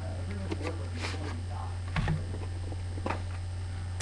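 A few light taps and clicks of a cardboard trading-card box being handled as its top is slid off. Under them runs a steady low hum, with faint talk in the background.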